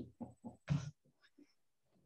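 A woman laughing briefly: a few quick bursts in the first second, then near silence.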